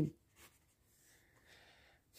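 Faint scratching of a ballpoint pen writing on a paper workbook page.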